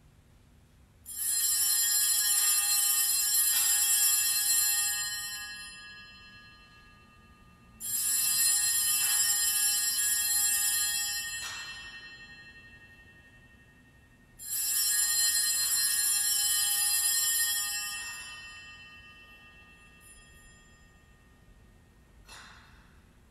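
Altar bells shaken three times, each ring held for about three seconds and then dying away, the rings about six and a half seconds apart.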